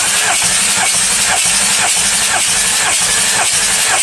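Audi 3.0 TDI V6 diesel being cranked on its starter motor for a compression test on cylinder five, a loud steady hiss with a regular pulse about three times a second. The gauge reading it gives is 26 kg/cm², a healthy cylinder.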